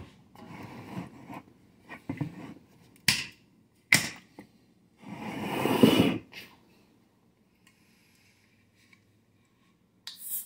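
Aluminium cider cans and their plastic four-pack carrier being handled: light rattling, two sharp clicks about three and four seconds in, then a louder scraping rustle around five to six seconds.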